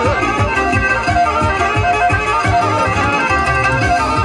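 Black Sea horon dance music: a Karadeniz kemençe melody over a steady beat, playing loud and continuous.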